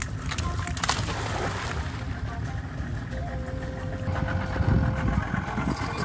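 Low, steady rumble aboard a small boat on the water: wind on the microphone with the boat's idling motor, broken by two sharp clicks in the first second.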